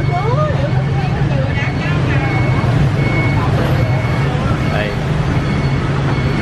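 Street traffic with a steady low engine rumble, and people talking in the background.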